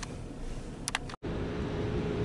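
Wind buffeting the microphone in gusts, a low rumbling noise with a faint steady hum under it, after a sudden cut about a second in. Before the cut the background is quieter, with one brief high squeak.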